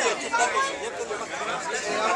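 Several people talking at once in casual chatter, voices overlapping.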